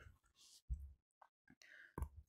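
Near silence, with one faint short click about two-thirds of a second in.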